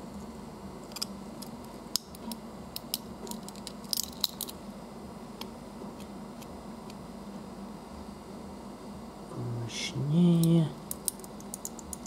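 A small hard fragment of fused nutmeg-and-glass stone scraping and clicking against a thin glass slide in a scratch-hardness test, a scatter of short sharp ticks and scrapes; it barely scratches the glass. About ten seconds in, a brief vocal sound.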